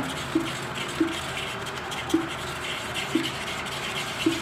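Plastic brush stirring and scraping wet black clay paste in a small plastic pot, with a short soft knock about once a second as the brush strikes the pot.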